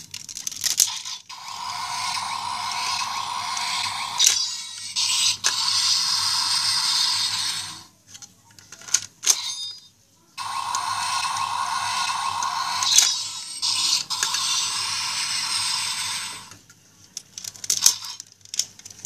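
DX Sakanamaru toy sword playing electronic sound effects through its small built-in speaker, twice, each about six seconds long, with a short pause between. Sharp plastic clicks come from the red disc and hilt being handled, at the start and between the two plays.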